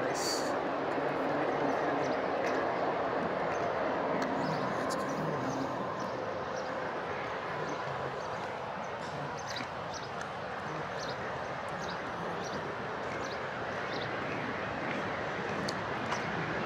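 Steady rushing roar of the Rhine Falls waterfall, a little louder in the first few seconds.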